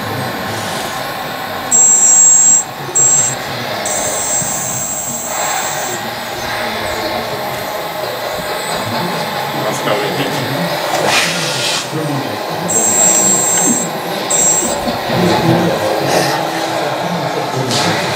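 Hydraulic pump of a 1/14.5 scale RC forklift giving a high-pitched whine in several short spurts, the longest about two seconds, as the forks are lifted and worked, over steady crowd chatter.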